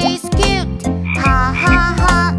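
Cartoon frog croaking over a children's song, with singing and backing music.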